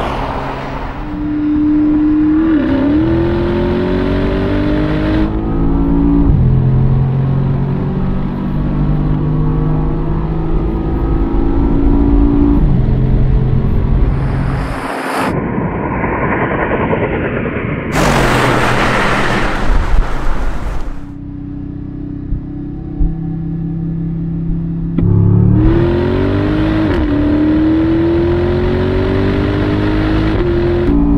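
Two twin-turbo V8 SUVs, a Mercedes-AMG G63 and a BMW X7 M50i, accelerating at full throttle in a 60-125 mph roll race. Engine pitch climbs, then drops back with each automatic upshift. The sound cuts between trackside and in-cabin recordings, with a short break about 15 seconds in.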